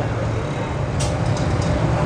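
A steady low machine hum fills the room, with one short sharp click about a second in and a few fainter ticks after it.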